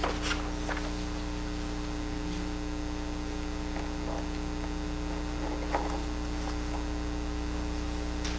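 Steady electrical mains hum running under the recording, with a few brief faint rustles and clicks at the start and one about six seconds in.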